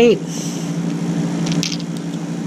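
The small knife blade of a multi-tool scraping cured clear-coat epoxy off a fishing lure's eyelet: a few short, faint scratches, about half a second in and again about a second and a half in, over a steady low hum.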